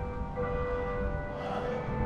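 Bells ringing, several pitched notes hanging on and overlapping, with new strikes about half a second in and again near the end.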